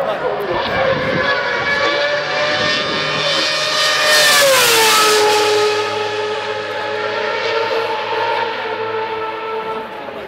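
Lotus Renault R31 Formula One car's V8 engine passing at speed: a high, steady engine note that grows loudest about four seconds in, drops sharply in pitch as the car goes by, then recedes at the lower pitch.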